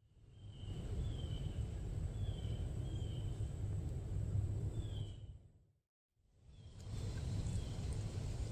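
Woodland outdoor ambience with a steady low rumble and a bird giving short sliding chirps several times. The sound fades out about five and a half seconds in and fades back in a second later.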